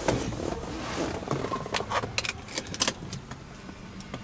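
A run of sharp clicks and small knocks of handling inside a Peugeot 408's cabin as someone gets into the driver's seat, over a low steady hum.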